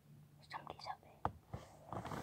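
Faint whispering, followed by two soft clicks.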